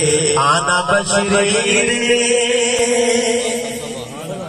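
A man's voice chanting devotional verse unaccompanied into a microphone, in long, wavering, ornamented held notes.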